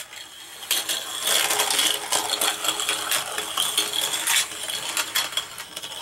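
A plastic starting gate opens with a click. Three Micro Drifters die-cast toy cars then roll on their ball bearings down a plastic track, a continuous rattle with many sharp clicks as they knock against the walls and curves. It stops just before the end as they reach the finish line.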